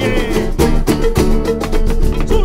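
Live band playing a fast instrumental passage: strummed acoustic guitars and a small guitar over an electric bass, with a quick, even percussive beat.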